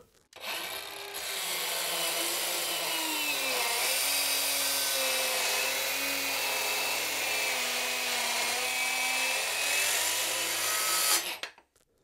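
Milwaukee M12 Fuel 2530-20 brushless cordless circular saw with a 36-tooth finish blade making a full-depth rip through a hard maple block. The motor spins up at the start, its pitch sags briefly under load a few seconds in, then it runs steadily through the cut for about eleven seconds and stops suddenly near the end.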